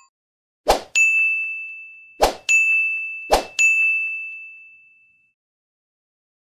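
End-screen subscribe-button sound effects: three times, a short pop followed by a bright bell ding that rings and fades. The third ding dies away about five seconds in.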